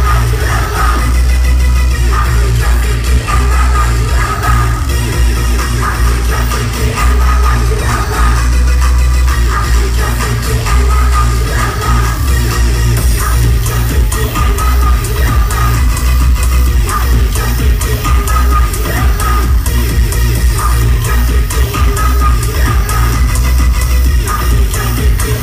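Loud live electronic rap-rave music from a concert sound system, with a heavy, steady bass and a held synth tone over it, heard from within the crowd.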